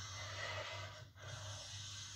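Two felt-tip pens held together being drawn across paper in long strokes, a dry scratchy hiss with a brief break about a second in, heard through a television speaker.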